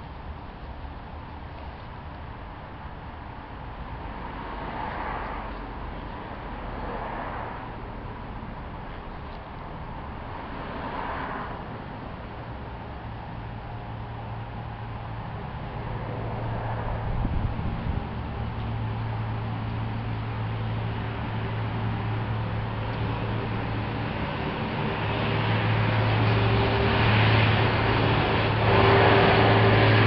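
Old Burgess electric paint sprayer running with a steady low buzz at one constant pitch. It starts about halfway through and grows louder near the end as it is brought closer.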